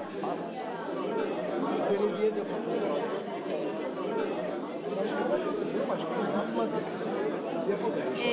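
Many people talking at once around tables: a steady hubbub of overlapping group conversations in which no single voice stands out.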